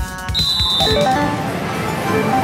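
Electronic music and a short, steady, high beep shortly after the start, giving way to the dense din of a pachislot hall with short stepping electronic jingles from the machines.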